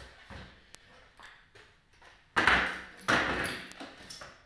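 Metal folding chair pulled across the floor: two rough scraping noises, the second about a second after the first, with a few light clicks before them.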